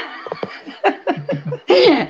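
A woman laughing in a run of short, stifled giggles.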